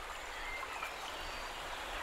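Quiet outdoor background noise under trees, with a few faint, brief high chirps of distant birds.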